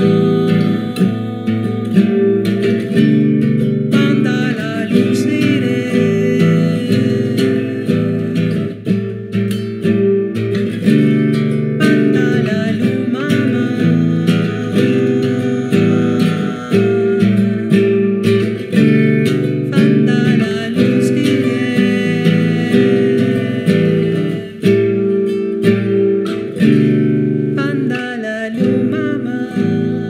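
Acoustic guitar song: plucked and strummed acoustic guitar with a singing voice over it.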